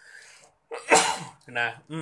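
A man sneezes once, a single sharp burst about a second in, after a brief faint intake of breath. A short spoken filler follows near the end.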